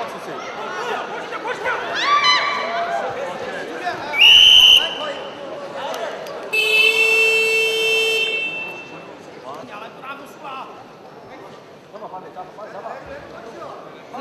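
Crowd voices and shouts in a wrestling arena. About four seconds in, a referee's whistle sounds once, short and loud. About two seconds later the bout's timing buzzer sounds for about two seconds, signalling a stop in the bout, before the crowd settles to a murmur.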